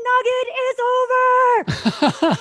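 A woman's loud, high, drawn-out shout, held on one pitch for over a second, acting out a guide yelling a warning at the top of his voice. Near the end it breaks into a run of quick, falling yelps.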